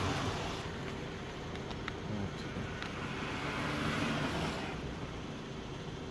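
Steady vehicle noise, with a few faint clicks and rustles as a leather document wallet is handled.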